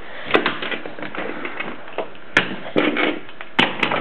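Wooden toy trains and track knocking and clicking as they are handled and pushed along: a string of sharp, irregular clicks and knocks, with short bits of scraping in between.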